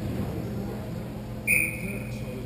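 Referee's whistle: one short, high, single-pitched blast about one and a half seconds in, over the steady low hum of the rink.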